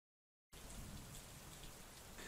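Near silence: dead digital silence, then from about half a second in a faint steady hiss of recording room tone.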